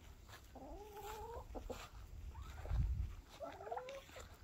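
Two drawn-out animal calls, each under a second and rising slightly in pitch, the first about half a second in and a shorter one near the end, with a low thump around three seconds in.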